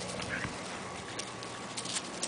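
Two beagle puppies play-fighting, with one short, high dog sound about half a second in and a few sharp clicks and rustles of paws scuffling in dry leaves and grass.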